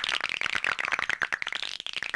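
Cartoon sound effect of joints cracking: a fast run of many sharp cracks and pops, as of knuckles being cracked.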